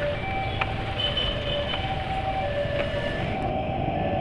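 A motor scooter riding slowly in dense motorcycle and car traffic: steady engine and road noise, with a few faint whines coming and going.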